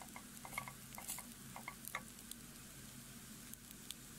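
Faint sizzling of rice, diced carrots and onion frying in oil in a stainless-steel pot, with scattered small crackles and light wooden-spoon stirring, most of them in the first two seconds.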